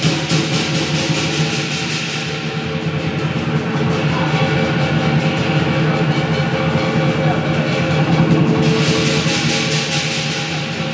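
Lion dance percussion: a drum beating rapidly and steadily, with clashing cymbals and a ringing gong.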